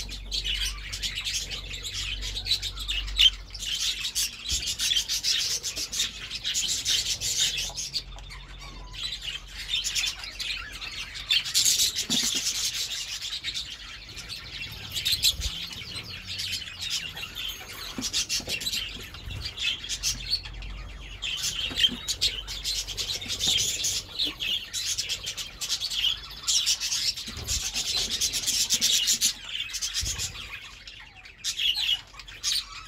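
A flock of budgerigars chattering and warbling without a break: a dense, scratchy, twittering chorus that swells and eases every few seconds.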